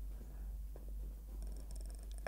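A low, steady hum under faint room noise, with a few faint ticks near the end.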